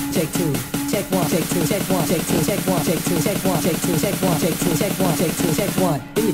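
Electronic dance music from a club DJ mix: a fast, even run of short swooping synth notes over ticking hi-hats, with little deep bass in this stretch.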